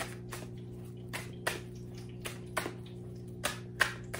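A deck of tarot cards being shuffled by hand: about a dozen short, irregular clicks and slaps of cards against each other, roughly three a second, over a steady low electrical hum.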